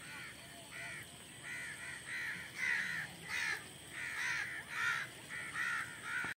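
Birds calling with short, harsh calls, one every half second or so, getting louder after the first couple of seconds.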